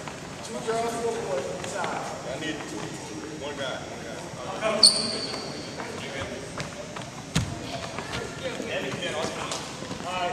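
Indistinct talking among a group of people in a gym, with a brief, loud, high squeak about five seconds in and a single thump of a ball bouncing on the hardwood court about two and a half seconds later.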